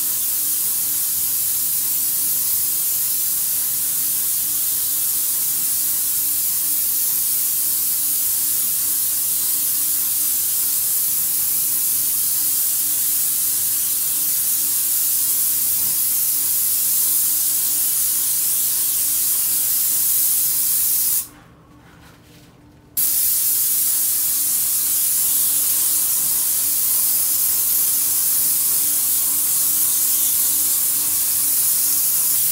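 Airless paint spray gun spraying paint onto a wall: a steady hiss of the spray that stops once for about a second and a half, about two-thirds of the way through, then resumes, with a steady low hum underneath.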